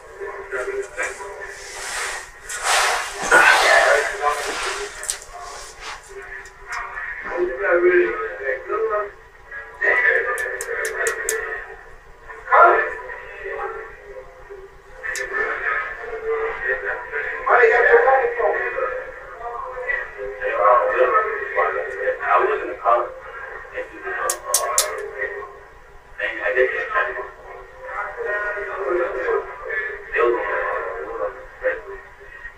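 Recorded voices played back through a laptop's built-in speaker: thin and tinny with no bass, too muffled to make out, with music alongside.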